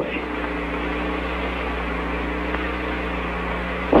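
A vaporwave track's sustained synthesizer pad holding one steady chord over a deep hum, in a gap between sampled spoken lines; a voice comes back right at the end.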